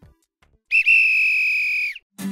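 A single long, high whistle blast lasting just over a second, holding one steady pitch with a brief catch near its start and stopping abruptly.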